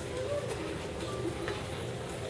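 Quiet murmur of a crowd of children and adults in a large hall, with scattered faint voices and a few light clicks.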